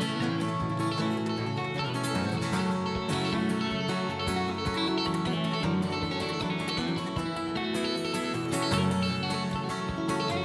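Instrumental break of a country song played on a picked banjo and a strummed acoustic guitar, with no singing.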